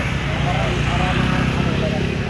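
Several people talking in the background over a loud, steady low rumble.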